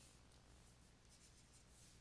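Near silence: faint scratching of a stylus on a drawing tablet as a letter is handwritten.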